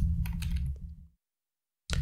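Computer keyboard keystrokes as a few characters are typed, over a low steady hum. The sound cuts off abruptly to dead silence just after a second in.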